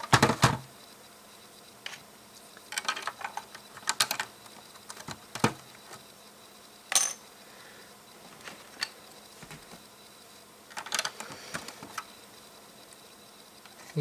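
Hard plastic LEGO plates and bricks clicking and clacking as they are handled, set down and pressed together: scattered sharp clicks, a cluster at the start, more from about three to five seconds, one at seven seconds and a few near eleven seconds.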